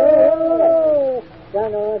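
Several men singing a Seminole song unaccompanied, holding long high notes as overlapping voices that slide downward together, breaking off a little past halfway and starting again near the end. Heard on an old disc recording with no high treble.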